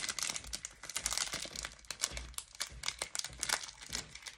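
Clear plastic packaging crinkling as it is handled and opened by hand, a dense run of irregular crackles.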